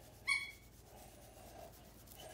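A dog holding a ball in its mouth gives one short, high-pitched whine about a quarter second in, in protest at being told to drop its toy.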